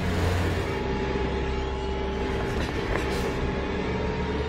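Old Land Rover's engine running steadily as it drives along a lane, a constant low drone with a steady hum above it. A brief hiss comes about three seconds in.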